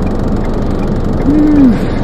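Steady road and engine noise inside a moving car's cabin, with one short low tone that rises and then falls just past the middle.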